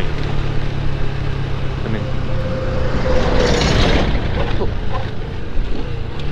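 Small 110 cc motorcycle engine running steadily, with wind on the microphone. An oncoming truck passes about three to four seconds in, a swell of noise that rises and fades.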